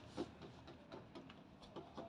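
Near silence with a few faint, scattered light ticks and taps, of small cards being handled on a desktop.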